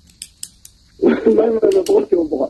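A few short, sharp clicks in the first second, then a man speaking from about a second in.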